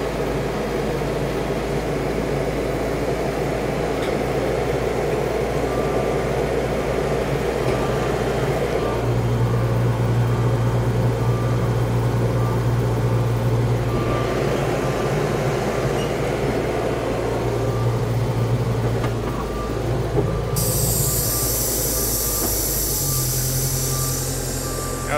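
Caterpillar crawler dozer's diesel engine running steadily under load as its steel tracks crawl up onto a lowboy trailer deck, the engine note swelling and easing several times. About 20 seconds in a high, hissing screech starts and keeps on, an interesting noise.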